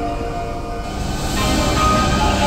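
Keihan electric train running on the rails, its steady rail noise swelling about halfway through as background music fades away.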